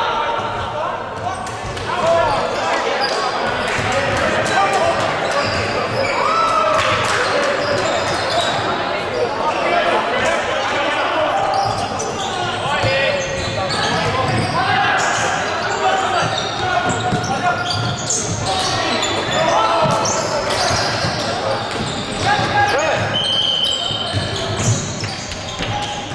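Basketball game sounds in a gym: a ball bouncing on the hardwood court amid players' and spectators' voices calling out, echoing in the hall. A brief high-pitched tone sounds near the end.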